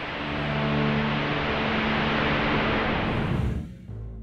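Sound effect of a volcanic ash cloud: a steady rushing rumble with held low musical notes beneath it, fading out near the end.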